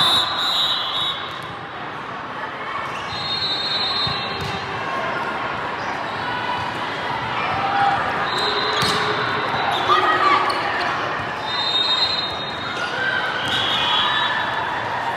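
Volleyball rally in a large, echoing hall: a few sharp smacks of the ball being hit over a steady din of players' and spectators' voices from many courts, with several brief high-pitched squeaking tones.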